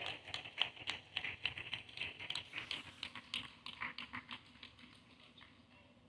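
Audience applause, many hands clapping at once, thinning out and dying away about five seconds in.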